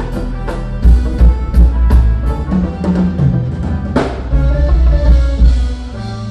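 Live reggae band playing: a drum kit over a heavy bass guitar line, with electric guitar and keyboards, and one loud drum or cymbal hit about four seconds in.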